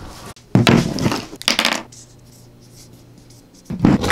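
Felt-tip marker squeaking and scratching across a paper label on a battery pack in several quick strokes, from about half a second in to two seconds in, then a knock near the end as the pack is set down.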